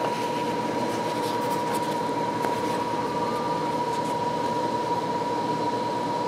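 Steady background machine noise: a constant hum and hiss with a thin, high, unwavering whine.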